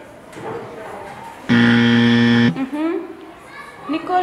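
A low, steady buzzer tone lasting about a second. It starts and stops abruptly about a second and a half in and is the loudest sound here.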